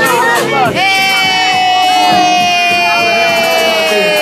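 Loud party music and crowd voices. From about a second in, one voice holds a single long note that slides slowly down in pitch.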